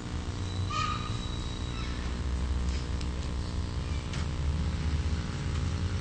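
Steady low electrical hum with a low rumble beneath it and a few faint clicks, no speech or music.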